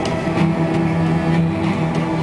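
Ensemble of cellos and double basses playing sustained low notes, with two sharp attacks about half a second and a second and a half in.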